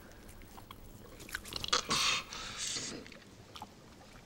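Quiet mouth sounds from a man: soft wet clicks of the lips and teeth, with two breathy exhales about two seconds in.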